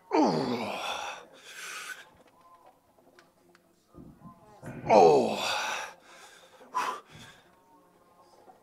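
A man's loud strained groans while squatting a 120 kg barbell for as many reps as he can: two long cries, each sliding down in pitch, one at the start and one about five seconds in, with a sharp breath after the first.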